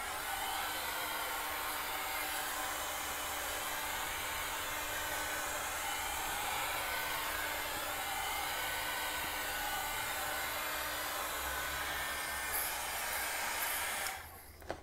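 Small handheld hair dryer blowing steadily on wet acrylic paint to dry the coat between layers: an even rush of air over a faint motor hum, its tone shifting slightly as it is moved over the board.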